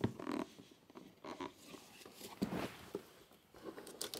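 Faint handling noises: a few short, soft scrapes and rubs of hands and a small cutting tool working at the plastic wrap of a sealed trading-card box.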